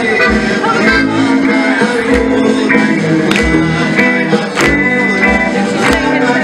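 Live klezmer band playing a tune on accordion, clarinet and double bass, with a steady beat in the low end.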